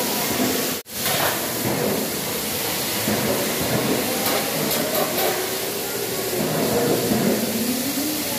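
Steady loud hiss of air blowers driving foam-ball cannons in an indoor play structure, with children's voices faint over it. The sound cuts out for an instant about a second in.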